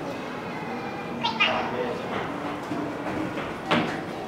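Children's voices in a classroom: indistinct chatter with a couple of short high-pitched exclamations, one about a second in and one near the end.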